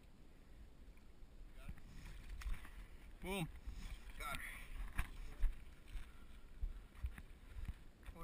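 Shallow water splashing and sloshing around a hooked bull shark, with a few dull knocks in the second half.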